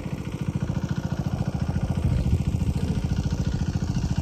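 Diesel engine of a field irrigation pump running steadily, a fast, even low thumping.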